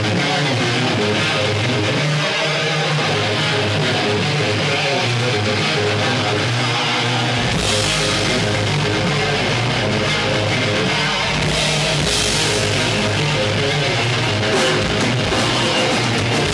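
A live heavy metal band playing the opening of a song: an electric guitar riff that starts thin, with the heavy low end and cymbal crashes coming in about halfway through.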